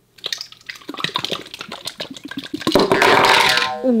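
Slime squelching and crackling with many small sticky pops as it is pulled and poured out of a plastic bottle, turning into a denser, louder wet squelch for about a second near the end.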